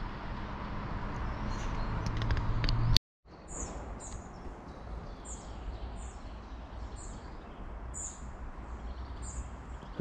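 A small bird chirping repeatedly in short high notes, about two a second, over steady outdoor background noise. The sound drops out completely for a moment about three seconds in, and the chirping follows.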